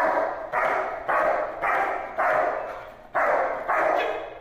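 German Shepherd barking at a protection helper, about seven loud barks roughly half a second apart, with a short pause before the last two. Each bark echoes briefly.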